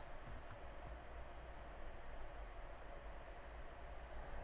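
Quiet room tone: a steady low hum, with a few faint clicks near the start.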